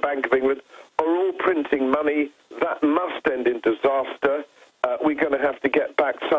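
Speech only: a man talking in phone-quality sound, thin and cut off above the middle range, with short pauses between phrases.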